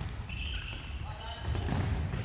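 Indoor football game echoing in a sports hall: players' distant shouts, the ball thudding on the hard court floor, and a few brief high squeaks of shoes on the floor.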